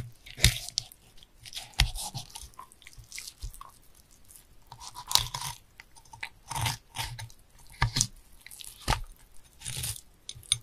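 A knife working on a sea bass: irregular crunching and scraping strokes of the blade through scales or bone, some landing with a knock on the cutting board.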